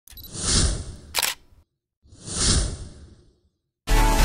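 Two swelling, whoosh-like sound effects of rushing noise, each about a second and a half long with a short silence between them, and a sharp click about a second in. Electronic music starts right at the end.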